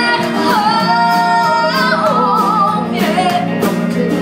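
Live rock band with guitars and drums, a woman singing long held notes without words, the last one wavering with vibrato.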